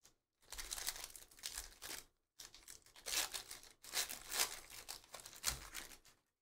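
Foil wrappers of Panini Prizm football hobby packs crinkling and tearing as packs are ripped open by hand, in three stretches of crackly rustling with short silent gaps between.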